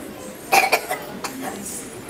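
A person's cough: a short, sharp burst about half a second in.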